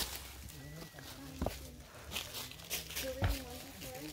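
Footsteps and movement through brush and over fallen logs, with two dull thumps about one and a half and three seconds in, and faint voices behind.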